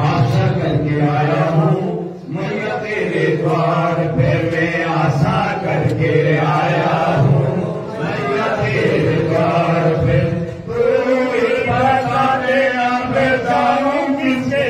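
Voices chanting mantras in a steady recitation during a Hindu fire offering (havan), phrase after phrase with short breaks about two, eight and ten and a half seconds in.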